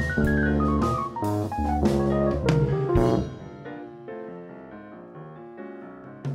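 Jazz trio of piano, electric keyboard and drum kit improvising in 13/16: a run of notes steps steadily down in pitch over cymbal and drum hits. About three seconds in it drops to quieter held chords.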